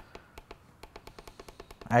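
RYOBI P742 radio speaker while it is being tuned between stations: a steady rapid ticking, about eight clicks a second, with a faint thin tone near the start.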